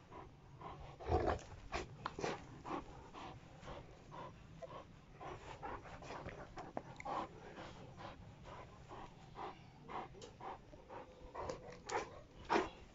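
Landseer dog panting rapidly and rhythmically, hard from tug-of-war play, with one louder burst about a second in.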